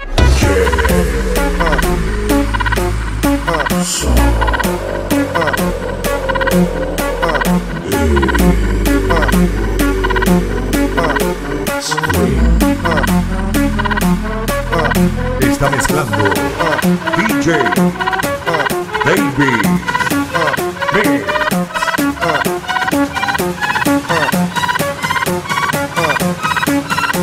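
Electro progressive dance track in a DJ mix: a steady electronic beat under a dense layer of quick, wavering pitched sounds. The heavy bass breaks briefly every few seconds, then cuts out a little past halfway.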